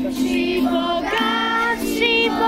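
A group of children singing a song together in unison, accompanied by an acoustic guitar, with held notes that shift to a new pitch about a second in.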